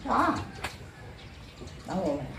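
A short, loud wordless vocal cry, with a second, shorter cry near the end. A single sharp knock falls just after the first cry.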